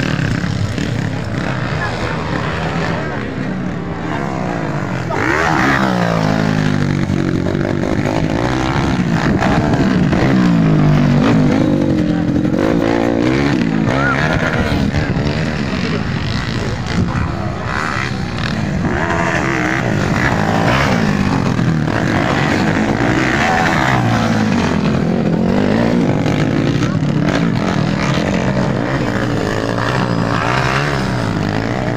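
Small dirt bike's engine running and being revved up and down repeatedly while the bike stands still, the pitch rising and falling every second or two.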